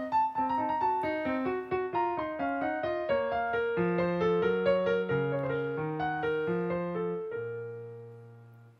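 Grand piano played four-hands by a girl and a toddler in an improvised duet: a stream of single notes and chords over shifting bass notes, ending near the end on a low chord that is held and rings out.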